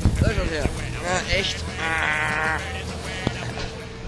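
Background music under a man's voice: a short exclamation, then a held, wavering vocal sound about two seconds in.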